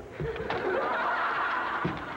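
A group of people laughing together, swelling about half a second in and carrying on.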